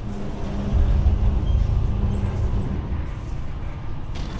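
Low, steady mechanical rumble with a hum, typical of an elevator car in motion; it swells about a second in and the hum fades near the end.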